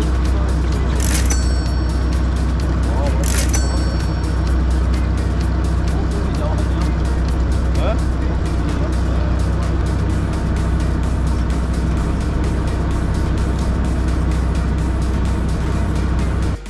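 Boat engine running with a steady low hum under a wash of broad noise. Two brief sharp noises come about a second in and again about three and a half seconds in.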